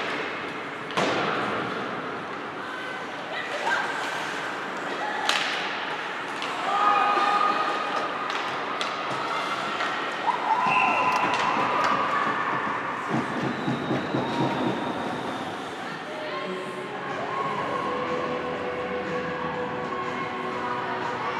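Ice hockey game sounds in a rink: sharp knocks of puck and sticks against the boards, loudest about a second in and again about five seconds in, ringing on after each, with players and spectators calling out.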